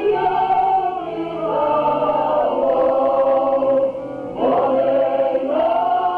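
Group of voices singing a Polish highland (góral) folk song in long held notes, sliding up into each phrase, with a short break between phrases about four seconds in.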